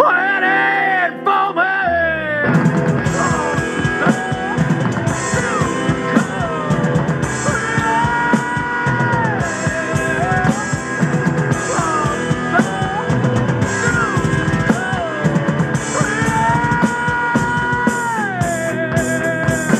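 Heavy rock song with a long, bending sung vocal line. About two seconds in, a drum kit comes in with a driving beat and cymbals under the band, played along to the recorded track.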